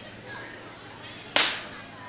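A single sharp crack about a second and a half in, dying away quickly.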